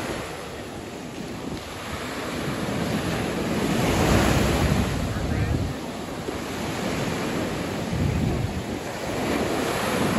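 Gulf of Mexico surf: small waves breaking and washing up the sand, with wind rumbling on the microphone. The surf swells loudest about four seconds in and again near the end.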